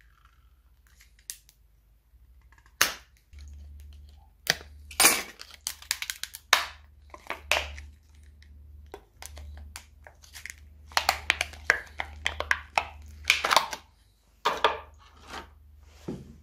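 Thin clear plastic mould being cut with a utility knife and peeled and cracked away from a cast green epoxy block, demoulding the cast: a run of sharp crackles and snaps in clusters, starting about three seconds in.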